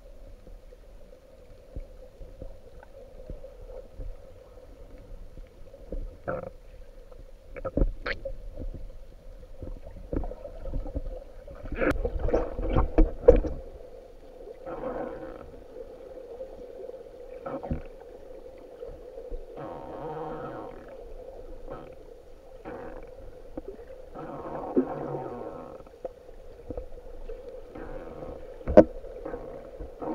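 Muffled underwater sound picked up by a submerged camera: a steady low hum with water movement, scattered knocks and bumps on the camera, and a louder stretch of knocks and rushes about twelve seconds in, with one sharp knock near the end.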